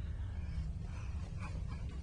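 Steady low background hum with a faint, brief toddler vocal sound about a second in.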